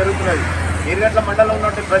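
A voice narrating in Telugu, speaking almost continuously, over a steady low rumble.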